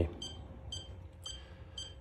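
iCharger X6 battery charger giving four short, high-pitched beeps about half a second apart, one for each button press as its menu is navigated.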